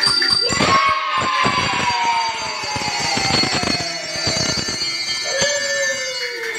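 Small hand-held handbells ringing and clinking as a group of children handle them, over a long tone that slides slowly down in pitch.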